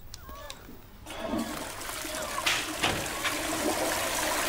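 Toilet flushing: a rush of water that starts about a second in and keeps running.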